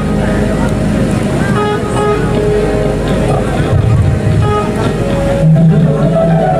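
Qawwali music: held keyboard notes under wavering singing voices, with the accompaniment shifting to new low notes about five and a half seconds in.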